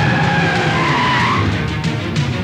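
A car's tyres screeching over background music.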